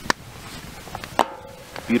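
Two sharp knocks about a second apart. The second is a small metal frying pan set down on the steel fire-pit grate, followed by a brief ringing.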